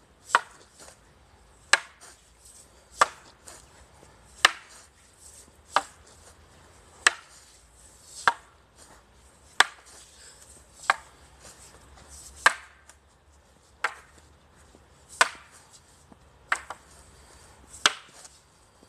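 Two long wooden staffs clacking together in a paired drill: single sharp strikes at an even pace, about one every second and a third, around fourteen in all.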